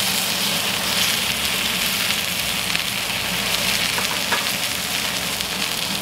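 Two NY strip steaks searing in a hot cast-iron skillet with avocado oil: a steady, even sizzle of meat frying in oil.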